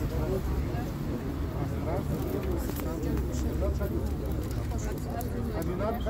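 Indistinct voices of several people talking, over a steady low rumble.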